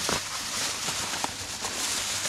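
Thin plastic carrier bag rustling and crinkling as it is handled, a steady hiss with small irregular crackles.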